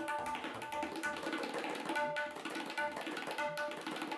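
Tabla played in a fast, dense run of strokes: the small right-hand drum rings out at a steady tuned pitch between strikes, over deeper strokes on the larger bass drum.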